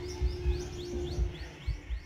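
A bird calling with a fast run of short, rising chirps, over faint distant music and low, uneven rumbles on the microphone.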